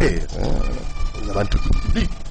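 A man's voice in short, broken vocal phrases, brief utterances rather than running speech.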